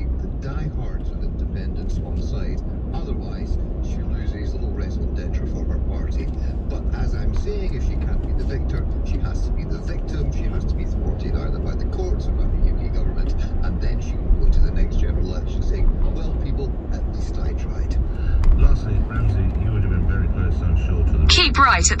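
Steady low road and engine rumble inside a car cruising at motorway speed, with faint talk underneath.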